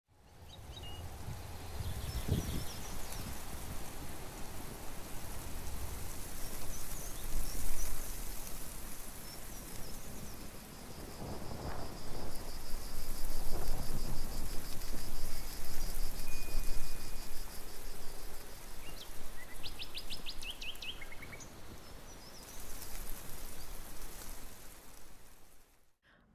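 Outdoor ambience: wind gusting on the microphone as a rising and falling rumble, with small birds chirping and trilling, including a quick series of chirps near the end.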